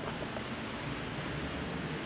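Steady outdoor background noise: an even hiss and low rumble with no distinct events.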